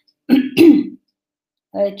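A woman clearing her throat in two quick pushes, lasting under a second.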